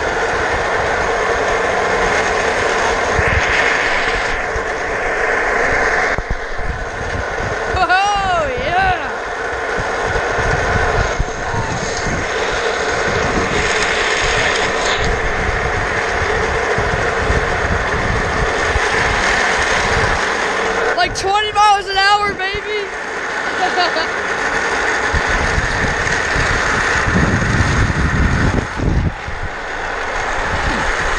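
Office chair casters rolling fast over asphalt while the chair is towed behind a golf cart: a loud, steady rolling noise. A voice yells briefly about 8 seconds in, and again for a couple of seconds around 21 seconds.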